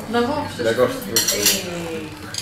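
Metal cutlery clinking against plates and dishes, with a burst of sharp clinks a little past a second in.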